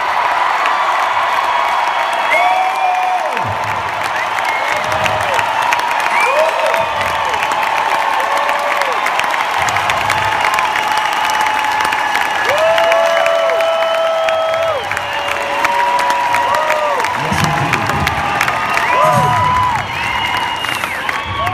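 Large arena crowd cheering and applauding steadily, with many individual whoops and screams rising and falling over the roar.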